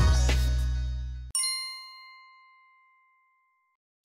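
The intro music's beat fades out, then a single bright chime rings about a second in and dies away over about two seconds: the logo sting of a channel intro.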